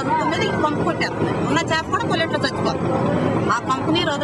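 A woman talking in the local language over steady background noise.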